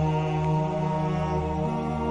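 Slow chanting, with a low voice holding long notes that step up in pitch near the end.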